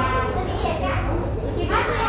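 High-pitched voices talking continuously, with a steady low hum underneath.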